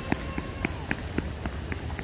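Quick footsteps on concrete pavement, about four a second, over a low steady rumble.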